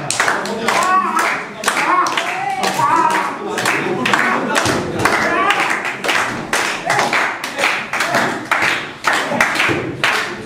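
Audience clapping in a steady rhythm, about two to three claps a second, with voices calling out over it.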